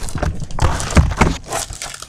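Plastic wrapping on a pack of 12 by 12 paper holders crinkling and rustling as the pack is handled, with a few soft thumps.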